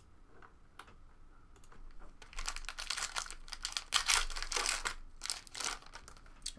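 Foil trading-card pack wrappers crinkling and being torn open: a few faint clicks of handling, then from about two seconds in a loud, dense crackle in several bursts.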